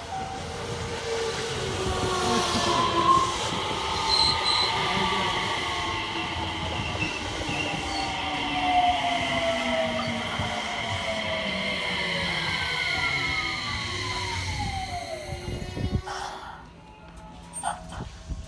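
Electric commuter train pulling into the platform, its motor whine made of several tones that slide steadily down in pitch as it brakes, with a steady high whine above them; the sound falls away suddenly about sixteen seconds in as the train comes to a stop.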